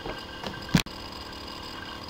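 Low background hum and hiss of a voice-over recording between spoken lines, with one short, soft low thump a little under a second in and a brief dropout just after it.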